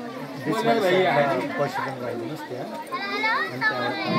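Chatter of several people talking at once, with higher children's voices joining about three seconds in.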